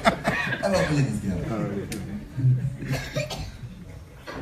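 Speech: a voice talking in short phrases, fading quieter toward the end.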